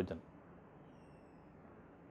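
Near silence: faint steady room hiss, after the tail of a spoken word right at the start.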